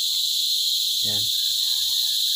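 A steady, high-pitched insect chorus droning without a break.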